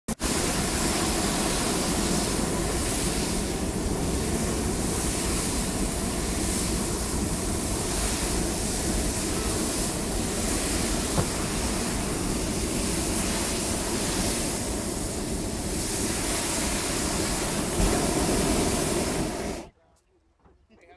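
Hot air balloon's propane burner firing in one long, loud, steady rushing blast that cuts off abruptly near the end, heating the envelope for lift-off.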